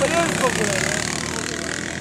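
Sidecar motorcycle engine running as the outfit rides through loose sand, with a voice briefly at the start.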